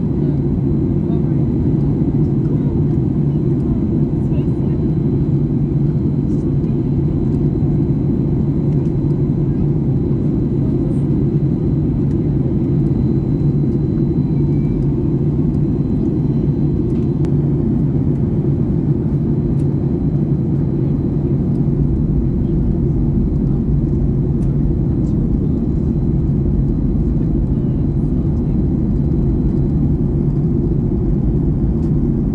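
Steady cabin noise of a Ryanair Boeing 737 in flight, heard at a window seat: an even, deep rumble of jet engines and airflow.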